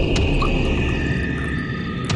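Dramatic background music: long held high tones over a low rumbling drone.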